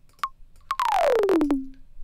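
Roland TR-808 kick drum sample, re-pitched high, played from the keyboard: a short high blip, then a run of notes sliding steadily down in pitch as the keys are swept downward. It settles briefly on a lower held tone before cutting off.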